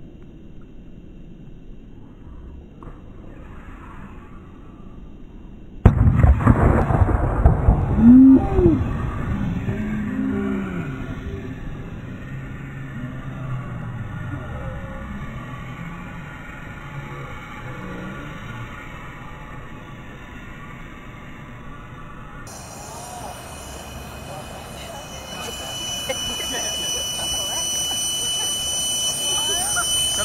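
A pressurised 2-liter plastic bottle water rocket bursting on its launch pad: a sudden loud bang about six seconds in, followed by excited voices. The bottle failed below its usual bursting pressure, which the teacher puts down to the bottle having been damaged or weakened, perhaps dropped.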